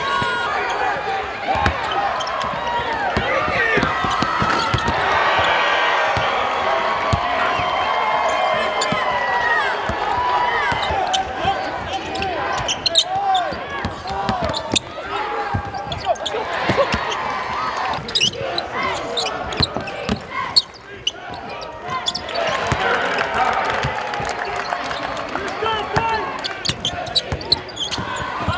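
Live basketball game sound on a hardwood court: a ball bouncing, shoes squeaking in many short chirps, and scattered voices of players and a small crowd.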